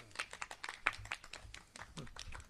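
Scattered clapping from a small group of people, quiet and irregular, several claps a second.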